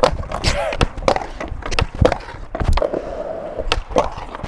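Skateboard doing a frontside smith grind on a concrete ledge: the trucks scrape along the ledge edge, and the deck and wheels clack sharply several times against the concrete as the board pops on and off, with wheels rolling on the skatepark surface.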